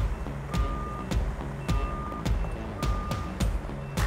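Construction-vehicle backup alarm giving three long, even beeps about a second apart, over background music with a steady beat.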